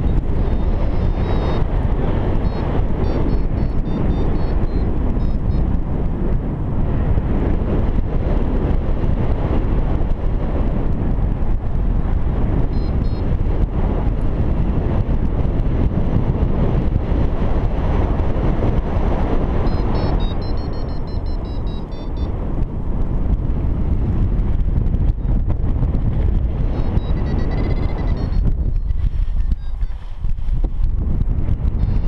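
Loud, steady wind rushing over the microphone in paraglider flight. Several short runs of faint, high electronic beeping from a flight variometer come through on top, the rapid beeping of its climb tone that signals rising air in a thermal.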